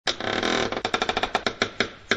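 Intro sound effect: a sudden burst of rough noise, then a rapid run of sharp knocks or clicks, about ten a second at first, spacing out and slowing near the end.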